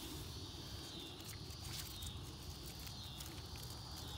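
Faint rustling and small crackles of watermelon vines and leaves as a hand pushes in among them, over a steady high-pitched insect drone.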